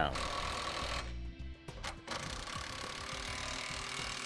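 Cordless impact wrench hammering as it runs the hitch nuts and bolts down tight. It goes in two runs, with a short break just over a second in.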